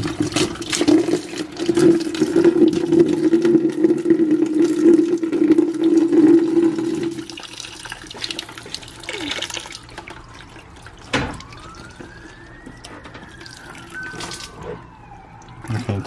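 Water pours from the opened head of a GE whole-house water filter into the plastic filter housing held beneath it. It splashes loudly at first, then thins to a trickle after about seven seconds as the line drains. In the second half a faint siren rises and falls, with a second wail starting near the end.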